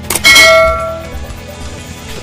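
A short click followed by a bright bell ding that rings out and fades over about a second: a subscribe-button and notification-bell sound effect, over background music.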